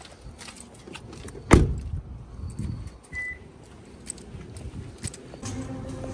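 Car keys jangling and clicking, with one loud thump about a second and a half in and a short high beep near the middle.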